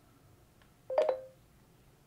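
A short electronic tone from the Samsung Galaxy Z Fold 7, about a second in, as Google voice typing stops listening.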